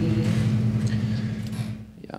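Steady low electrical hum on the audience-question microphone line, with faint trailing speech in the first half second; the hum fades away just before the end.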